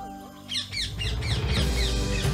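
Background music dips, then about half a second in a birdsong sound effect begins: rapid, repeated, high falling chirps over low music.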